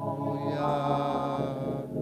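Slow church worship singing: a man's voice through the microphone holding long, steady notes, changing pitch about every second.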